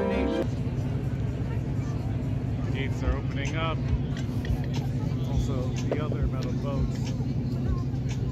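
Tour boat's engine running with a steady low hum while it waits to proceed, with passengers chattering over it.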